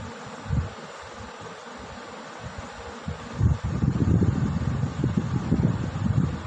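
Marker pen writing on a whiteboard, with rustling and scraping that grows louder about halfway through, over a steady background hum.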